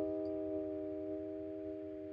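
A beat playing back from Ableton Live: a held chord of several steady notes sounding alone and slowly fading.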